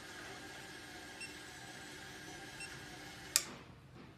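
Inkjet coding printer's conveyor belt running with a steady mechanical hum and whine while a sheet is carried under the print heads. A sharp click about three and a half seconds in, after which the hum stops.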